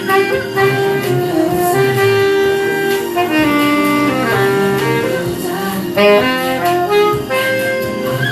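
Saxophone playing a melody of held and gliding notes live over a recorded backing track.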